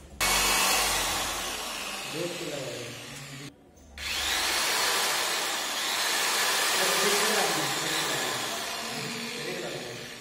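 Loud electric motor whirring, switched on suddenly. It cuts out about three and a half seconds in and spins up again half a second later. Voices talk beneath it.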